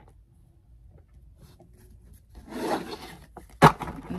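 Tarot cards being gathered up and slid across a tabletop: a rasping rub about two and a half seconds in, then a single sharp knock, the loudest sound, as the gathered deck meets the table.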